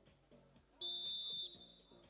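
Wrestling referee's whistle: one shrill blast of under a second, starting a little before halfway in and then fading, as the referee halts the ground wrestling on the mat. Quiet background music plays under it.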